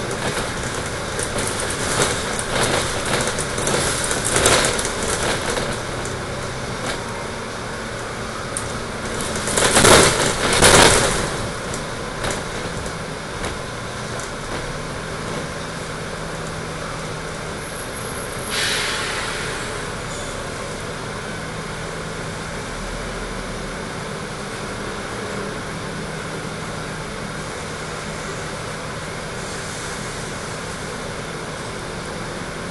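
Dennis Trident double-decker bus heard from inside the cabin: engine and road noise while it drives, with two loud rushes about ten seconds in. Then it stands at idle with a steady low hum, and a short hiss sounds about eighteen seconds in.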